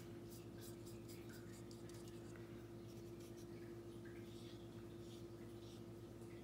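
Faint scratchy strokes of a paintbrush on paper, repeated throughout, over a steady low electrical hum.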